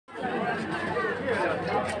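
Chatter: several people talking at once.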